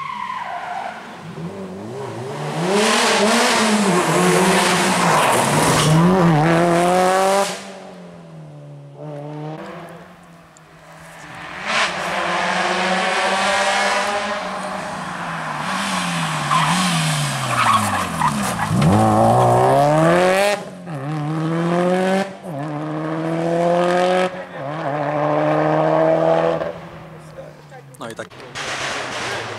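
Subaru Impreza GT rally car's flat-four engine revving hard through the gears. The pitch climbs and drops at each shift. Around the middle the revs fall away deeply and then climb again.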